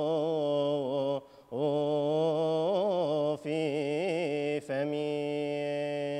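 A man chanting solo and unaccompanied in the Coptic liturgical style, drawing out a psalm verse in long held notes with wavering melismatic ornaments. He breaks off for a breath a little over a second in, with shorter breaks around three and a half and four and a half seconds in.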